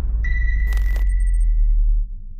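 Glitchy electronic logo sting: a heavy bass drone under a steady high beep that holds for over a second, with crackling digital stutters and a short noisy burst midway.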